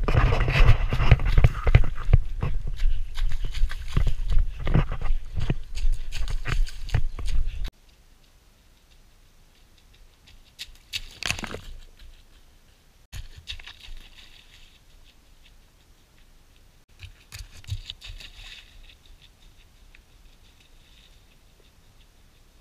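A runner's footfalls, a couple of steps a second, with wind buffeting a body-held GoPro microphone, cutting off suddenly about a third of the way in. After that only a few faint, brief outdoor sounds at a quiet trailside.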